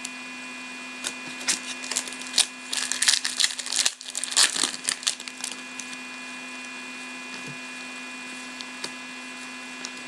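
Trading cards and foil pack wrappers being handled: a busy run of crinkles and clicks for a few seconds, then a few quieter clicks, over a steady electrical hum.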